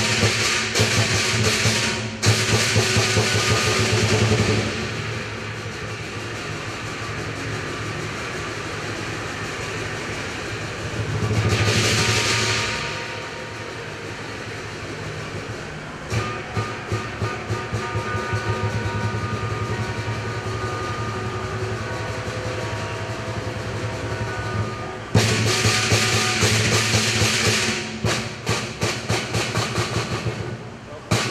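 Lion dance percussion: a Chinese drum with clashing cymbals and gong driving the performance. Loud, dense passages with crashing cymbals open the passage and return near the end, with a quieter stretch of steady drum beats in between.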